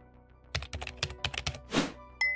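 Computer keyboard typing sound effect: a quick run of key clicks, then a short swoosh near the end, over soft background music.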